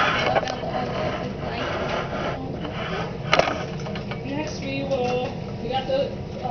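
Low, indistinct voices of people talking in a small room, over a steady low background hum, with one sharp knock about three and a half seconds in.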